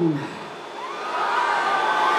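Large concert crowd cheering and screaming in answer to a question from the stage, swelling about a second in into a sustained high-pitched shriek of many voices.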